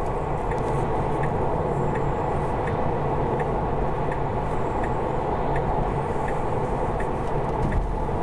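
Steady tyre and road noise inside a Tesla Model 3's cabin at motorway speed, with the turn-signal indicator ticking faintly about every three-quarters of a second.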